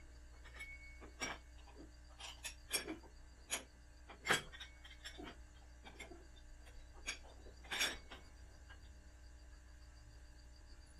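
Metal clinks and knocks of a steel stabilizer link and its pin being fitted by hand to a tractor's three-point hitch lift arm. There are a dozen or so sharp clinks, the loudest a little past four seconds in and a few more close together near eight seconds, over a steady low hum.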